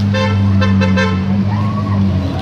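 Lamborghini Huracán's V10 engine running at low revs as the car crawls past, a steady low hum. A car horn gives a quick series of short toots during the first second.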